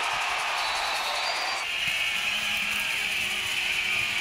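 Arena crowd cheering steadily, with music mixed underneath.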